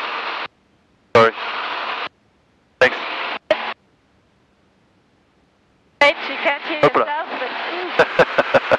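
Cockpit noise heard through a light aircraft's headset intercom, switching on and off: short blocks of even hiss that start with a click and cut off abruptly into dead silence, three times in the first few seconds. After a silent stretch it comes back with voices near the end.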